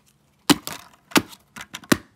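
A DVD disc on carpet being struck and broken, the plastic cracking and splintering. There is a sharp crack about half a second in, another just after a second, and a quick cluster of smaller cracks near the end.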